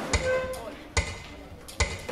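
Metronome clicking at a steady slow tempo, three clicks a little under a second apart, giving the beat for the count-in.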